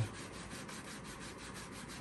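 Faint rubbing of a cloth rag, damp with lacquer thinner, over a plastic slot car track section, wiping at the printed yellow graphics to take them off.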